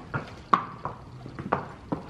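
Horses' hooves clip-clopping at a walk on a concrete floor, about half a dozen uneven strikes.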